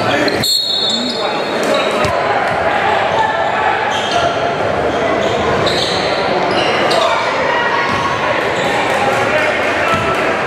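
Live game sound in a large gym: the indistinct chatter of spectators with a basketball bouncing on the hardwood court. The sound cuts out briefly about half a second in.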